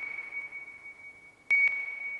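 Electronic sonar-like ping: a single high steady tone that sounds sharply at the start and again about a second and a half in, each ping fading slowly.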